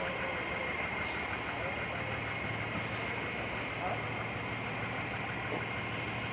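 A fire truck's engine idling steadily, a low hum with a thin, steady high whine over it.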